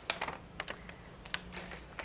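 A few light, irregular clicks and taps from objects being handled at a lectern, over a faint steady hum.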